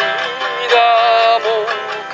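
A man singing a slow ballad in Japanese, with vibrato on long held notes, to his own acoustic guitar accompaniment.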